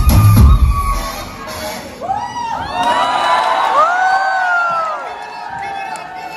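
A dance track with heavy bass, whose bass drops out about a second in, followed by an audience cheering with high-pitched screams and whoops for about three seconds.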